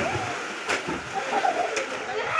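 Water splashing in a small swimming pool as several people thrash about, with sharp splashes now and then. A short wavering call rises over it about a second in.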